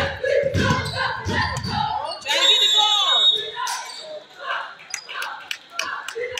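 A basketball bouncing on a gym's hardwood floor, with several deep bounces in the first two seconds, among voices in a large echoing gym. A burst of high squeaking comes about two seconds in.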